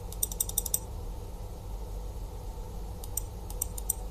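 Quick runs of small clicks from a computer mouse: about eight in rapid succession in the first second, then a few more near the end, over a steady low hum.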